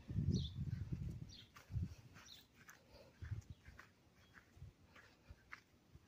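Faint footsteps through grass and dirt with low rumbling and scattered small clicks, loudest in the first second and a half.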